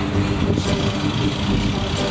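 Lincoln Navigator's V8 engine running steadily, with a low rumble, as the SUV begins to pull a boat up the ramp.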